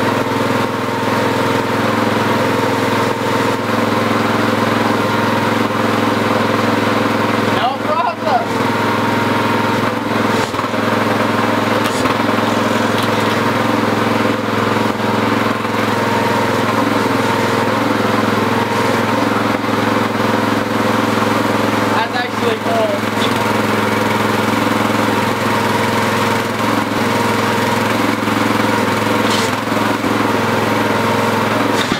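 Homemade tractor's small petrol engine running steadily while the hydraulic front-loader cylinders are worked, with brief wavers in its note about 8 and 22 seconds in.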